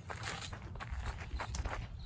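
Soft footsteps and scuffs on a sandy dirt trail.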